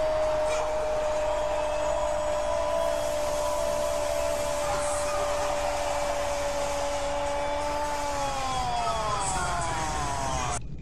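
A man's long held shout on one steady pitch for about eight seconds, sliding down in pitch near the end, over steady stadium crowd noise.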